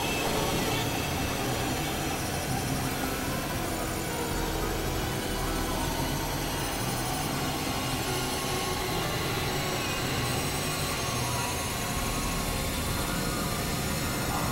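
Dense, steady wash of experimental electronic music made by several tracks playing at once, blending into a noisy drone with scattered held tones and no clear beat.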